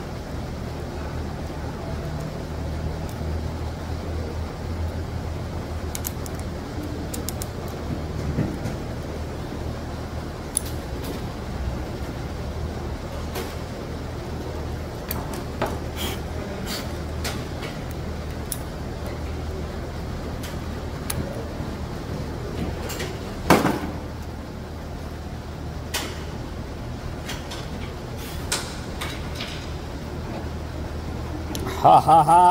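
Small steel parts of a manual free-wheel hub clicking and clinking now and then as they are handled and fitted together by hand on a steel workbench, with one louder knock about two-thirds of the way through, over a steady low hum.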